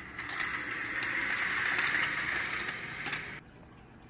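Vertical window blinds being drawn open, the slats clattering and sliding along the track in one continuous pull of about three seconds that stops suddenly.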